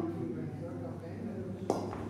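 Quiet talk over a steady low hum, with one sharp knock near the end.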